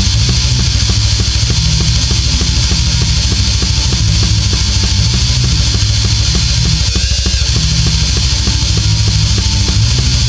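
Instrumental progressive death metal: heavy guitars over a drum machine, with a fast, even bass-drum pattern of about six hits a second and no vocals.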